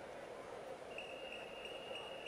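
Steady background noise of an indoor competition pool hall. A thin, steady high-pitched tone comes in about a second in, with faint regular ticks.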